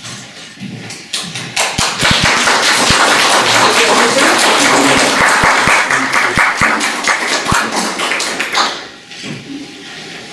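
Audience applauding, building up about a second and a half in and dying away near the end, with a few low thumps among the clapping.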